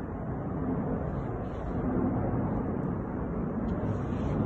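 Steady low rumble of outdoor street background noise, swelling slightly about halfway through.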